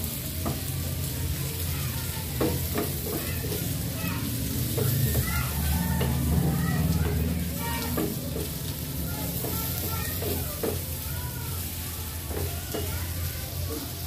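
Sliced sausages sizzling as they pan-fry in a small frying pan, stirred with a wooden spatula that scrapes and taps against the pan again and again, over a steady low hum.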